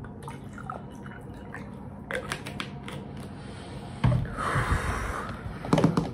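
Water poured from a bottle into a small glass of neat rum: a few light clicks of handling, then a short splashing pour about four seconds in lasting about a second, and knocks as the bottle is set down on the wooden table near the end.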